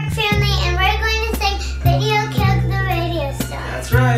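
Music: a young girl singing a wavering melody over long, held bass notes that change pitch about once a second, with light ticking percussion.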